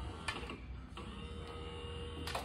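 A small electric hoist motor (Smart Lifter LM car boot hoist) starts about a second in, after two sharp clicks, and runs with a steady whine while it pays out the lifting strap to give slack.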